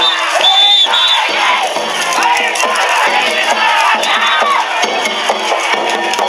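A crowd of danjiri pullers shouting and calling out together as the float is run, with festival music under the shouting. Short, high whistle blasts sound about half a second in.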